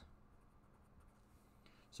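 Faint scratching of a pen writing a short word on paper.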